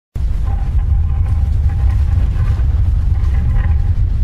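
A loud, steady deep rumble that cuts in suddenly at the very start, with a faint high melody line running over it, as in an animated logo intro.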